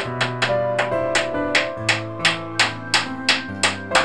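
Background music with sustained instrument notes over a quick, even series of sharp knocks, hammer blows driving nails into a wooden board.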